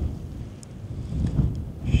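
Wind buffeting the microphone: an uneven low rumble that swells and fades.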